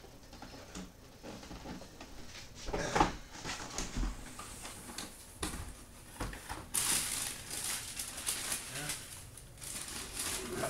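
Cardboard shoeboxes being handled and opened, with scattered knocks and thumps, the loudest about three seconds in. From about seven seconds in comes a steady crinkling and rustling of tissue paper as a sneaker is unwrapped from its box.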